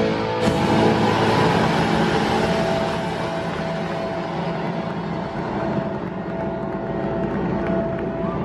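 Live rock band's song ending with a final crash about half a second in. The band's sound dies away into a loud, even wash of arena crowd noise, over which a single electric guitar note is held from about two and a half seconds in.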